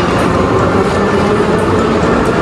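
Steady din of a busy subway station concourse: crowd noise and station rumble with faint distant voices, with no single sound standing out.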